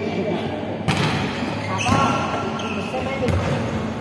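Volleyball being hit and bouncing on the court in a large indoor hall: a few sharp smacks, the first about a second in, among players' shouts.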